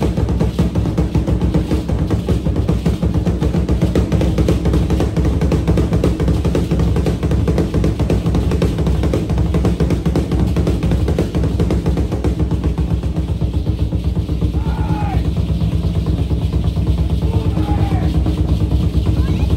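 Steady, fast drumming that carries the ritual dance. A couple of short sliding calls cut through near the end.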